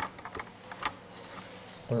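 A sharp click, then a few faint scattered ticks over a faint steady hum; a man starts speaking at the very end.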